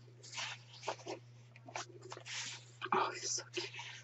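Paper pages of a softcover art-journal book rustling as a page is turned over and pressed flat, in several short bursts. A steady low hum runs underneath.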